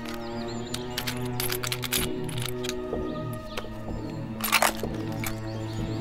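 Sustained background music with a series of sharp metallic clicks and knocks over it, from a rifle being handled and its telescopic sight fitted. The loudest is a short rattle a little after four and a half seconds in.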